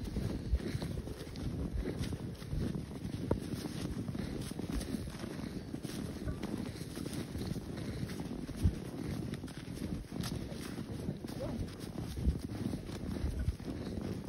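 Footsteps walking through snow, an uneven run of soft steps with a few sharper knocks, and wind rumbling on the microphone.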